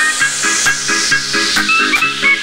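Electronic dance music from a Dutch house DJ mix. A hissing white-noise sweep falls in pitch over a repeating synth riff, a stepping bass line and regular percussion hits.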